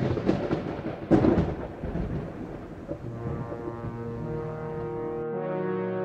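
Rumbling thunder with a loud crack about a second in, fading under a held music chord that swells in over the second half.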